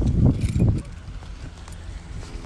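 Handling noise on a handheld phone's microphone as it is moved: a low rumble with a few knocks that dies down about three-quarters of a second in, leaving a quieter low murmur.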